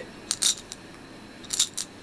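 Small dice clicking and rattling inside a clear plastic cap as it is handled and set on a wooden tabletop. There are two sharp clicks about half a second in and two more near the end.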